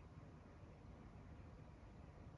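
Near silence: faint, steady outdoor background noise with no distinct sounds.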